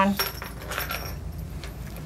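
Light metallic jingling and clinking, a few faint clicks over a low steady background hum.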